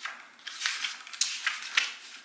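Pages of a paper guidebook being flipped, several quick papery rustles with a few sharp clicks.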